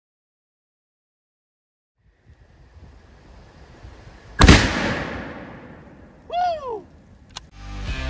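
A rifle shot sets off a Tannerite target: one loud boom about halfway through, with a long rolling decay. A person whoops a couple of seconds later, and rock music starts near the end.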